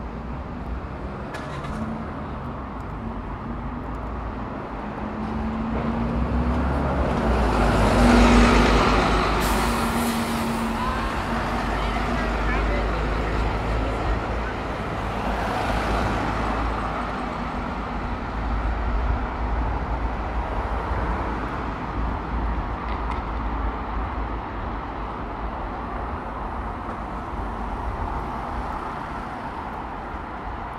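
City street traffic: motor vehicles passing close by. The loudest swells up and fades away about eight seconds in with a low engine hum, and another passes around sixteen seconds.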